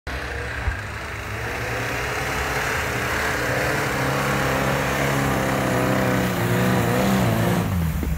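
Suzuki Samurai's four-cylinder engine running as it drives through snow, with tyre and snow noise, growing louder as it approaches. The engine note drops near the end as it slows to a stop.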